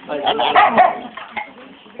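Dogs barking, a cluster of barks in the first second that then dies down.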